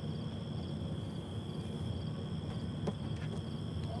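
Night insects chirping: a steady high trill with short pulsed chirps repeating about twice a second, over a low steady rumble, with a couple of faint clicks near the end.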